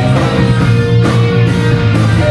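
Live rock band playing loudly: electric guitars, bass and drums, with chords held over a steady beat.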